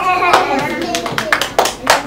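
Scattered hand claps from a few children, irregular and uneven, with children's voices at the start.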